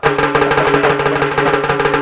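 A troupe of dappu frame drums, beaten with sticks in a fast, even roll over steady held tones. It starts suddenly at full loudness.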